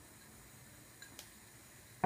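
Near silence: room tone, with two faint clicks a little after a second in.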